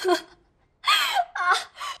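A young woman's voice: a short gasp, then a loud, breathy, whining "ah" about a second in that falls in pitch, followed by a couple of shorter whimpering sounds.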